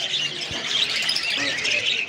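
Many caged small birds chirping and twittering together without a break, with people's voices lower underneath.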